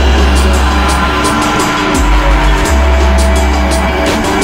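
Dark downtempo IDM/trip-hop electronic track: deep, heavy sub-bass notes under sustained synth tones, with crisp percussion ticks keeping a steady beat. The bass note changes about halfway through and again shortly after.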